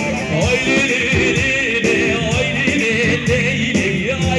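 Kurdish giranî halay dance music played live through PA speakers: a wavering, ornamented lead melody over a steady drum beat.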